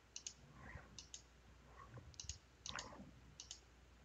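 Faint computer-mouse clicks, about five quick pairs spread over a few seconds, as pages are selected in a note-taking program.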